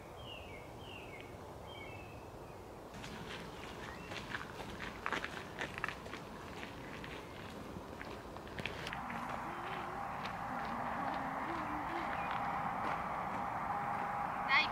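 A bird gives a few short falling chirps. Then footsteps crunch irregularly on a gravel path. In the last third a steady outdoor hiss with a faint hum takes over.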